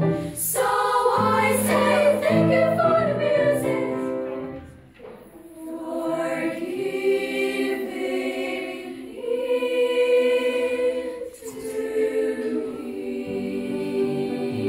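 A children's choir singing, with a short break between phrases about five seconds in.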